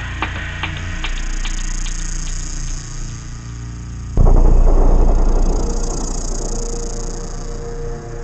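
Electronic techno intro: a steady low synth drone with scattered sharp clicks, then a sudden loud low hit about four seconds in that fades over a couple of seconds into a held tone.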